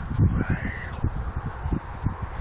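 A crow caws once, about half a second in, over wind rumbling on the microphone.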